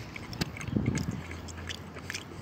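A person chewing a mouthful of soft smoked fish, with small wet mouth clicks and one sharper click about half a second in.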